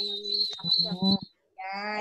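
People's voices over a video call, drawn out and sing-song, with a thin steady high tone under them through the first part. The sound cuts out suddenly for a moment after the middle.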